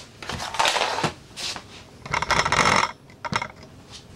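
Handling noise from a camera being moved and set in place: rubbing and scraping close to the microphone with a few sharp knocks, the longest and loudest rubbing about two seconds in.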